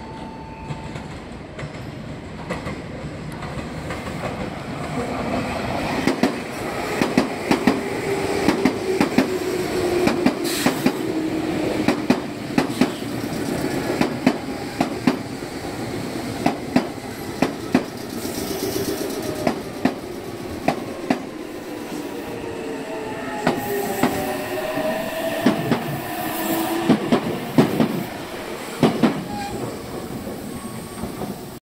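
Meitetsu 6000-series-family six-car electric train running into a station over pointwork and slowing. Its wheels click sharply and irregularly over rail joints and points, getting louder a few seconds in, with a squeal that glides up and down.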